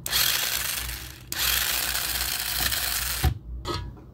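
Small geared DC motors of a home-made toy car whirring, in one run of about a second and a longer run of about two seconds, then cutting off suddenly with a click.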